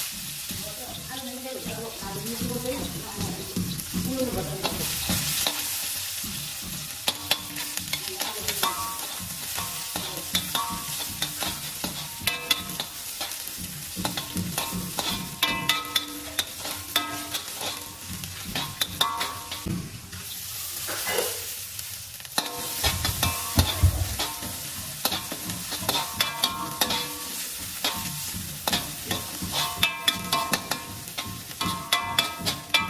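Sliced onions sizzling in hot oil in a black wok, stirred and scraped with a metal spatula, with frequent clicks and scrapes of metal on the pan. A single low thump comes about three quarters of the way through.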